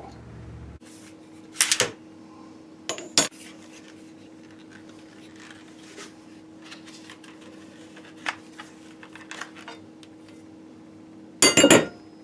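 CVA Kentucky long rifle handled over a workbench: small taps and metallic clinks, with two sharper knocks about two and three seconds in and a louder clatter near the end.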